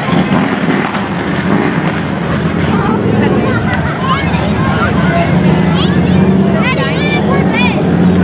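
A car engine running slowly at parade pace as it rolls past, under the chatter and calls of a crowd of spectators. The engine's low hum grows stronger in the second half.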